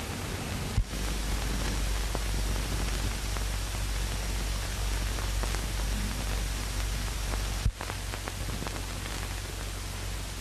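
Steady hiss and low hum of an early sound-film soundtrack with no dialogue. It is broken twice by a sharp click with a brief drop-out, about a second in and near the end, and the hum grows stronger between the two clicks.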